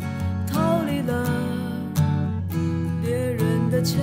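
A song playing: acoustic guitar with a voice singing a wavering melody line over it.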